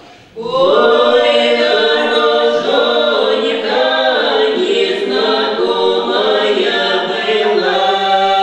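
Cossack folk song ensemble of men's and women's voices singing a cappella in harmony. The whole group comes in together about half a second in, after a brief breath pause, and sings on steadily.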